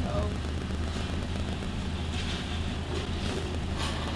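Car engine idling steadily, heard from inside the car with the driver's window open, with faint voices in the background.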